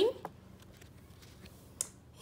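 Paper being handled, with faint rustles and one sharp snap near the end as the sheet is turned over to the next page.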